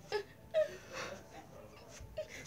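A girl whimpering: three short, pitched cries in the first second, as in pretend crying.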